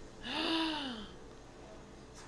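A person's breathy, voiced gasp, its pitch rising and then falling, lasting under a second.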